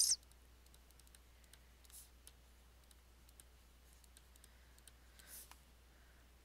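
Faint, scattered clicks and taps of a pen stylus writing on a tablet, over a steady low hum.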